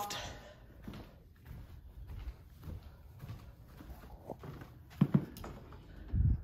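Soft, uneven footsteps on carpet with camera-handling rumble, then a sharper knock about five seconds in as a closet door is opened.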